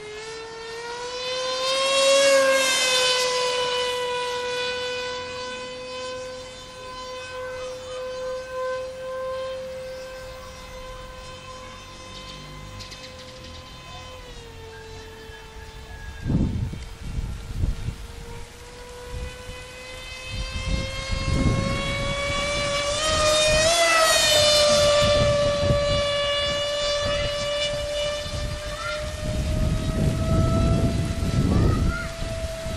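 Multiplex FunJet RC plane's electric motor and pusher propeller whining at full throttle, one steady high whine that rises in pitch and grows loud as the plane passes close about two seconds in and again near the end, and dips in pitch about halfway. Gusts of wind buffet the microphone through the second half.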